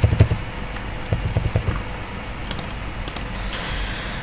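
Two short bursts of rapid clicks and soft knocks from a computer's controls, one at the start and one a little over a second in, as the document is scrolled.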